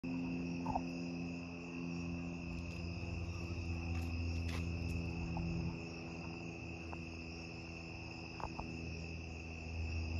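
Night insects, such as crickets, calling in a steady, unbroken high-pitched chorus over a low, steady hum, with a few faint clicks.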